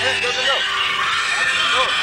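Rock music playing on a car radio, with two short rising-and-falling vocal glides, one about half a second in and one near the end.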